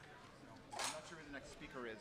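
Indistinct chatter of several people talking in a crowd, with one short, sharp hissing noise about three-quarters of a second in.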